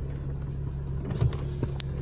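A steady low hum of a car's engine and road noise heard inside the moving car, with a few faint clicks in the second half.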